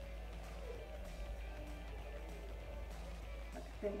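Soft background music, steady and without speech.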